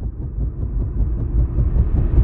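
Helicopter rotor throbbing: a deep, rapid thudding that grows steadily louder and brighter.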